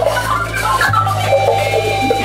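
Live jazz-rock band playing: electric guitar and saxophone over long, held bass notes, the bass note changing about a second in. A quick run of notes in the middle settles into a long held note.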